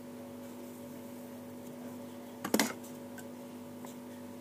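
Steady electrical hum with a low tone and several overtones, broken about two and a half seconds in by a short clatter, with a few faint ticks near the end.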